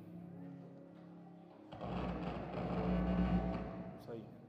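Soft sustained keyboard chords, then, a little under two seconds in, a swelling rustle and deep rumble of a congregation sitting down on wooden pews, fading near the end.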